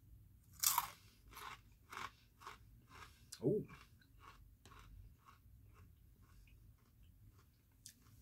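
Rolled corn tortilla chip (Fuego Takis) bitten with a loud crunch under a second in, then chewed with a run of crunches about twice a second that grow fainter over the next several seconds.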